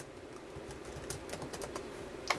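Scattered light clicks and taps at irregular intervals over a steady low hum.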